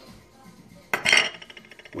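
A measuring cup knocking against the rim of a stainless steel pot as sugar is tipped out onto raspberries: one sharp clink about a second in, followed by a brief fast rattle.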